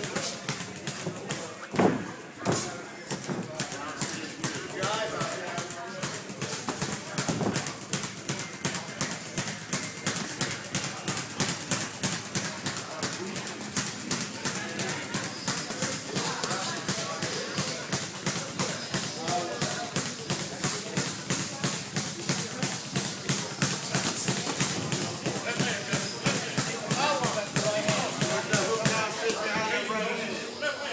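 Boxing gym sparring: a fast, even rhythmic tapping runs on, about four strokes a second, under voices and music. Gloved punches thud now and then, one loud one about two seconds in.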